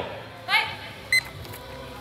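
A single short electronic beep a little over a second in, over low room noise. A brief voice sound comes just before it.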